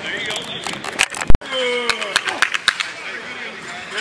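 Outdoor football practice ambience: men's voices shouting and calling out, with scattered sharp clacks and knocks. One loud, sharp knock about a second in.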